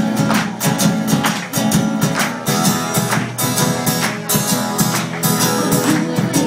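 Live indie-folk band playing an instrumental passage: strummed acoustic guitars over cello and percussion keeping a steady rhythmic beat, with no singing.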